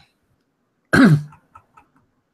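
A person clearing their throat once, about a second in, with a short falling voiced tail, followed by a few faint clicks.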